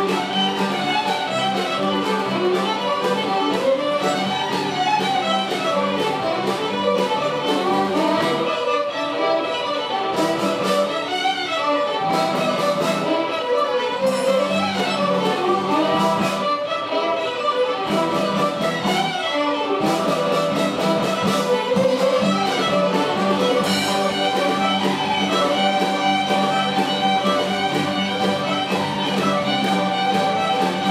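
A large ensemble of fiddles playing a tune with a steady beat, accompanied by acoustic guitars and a cello.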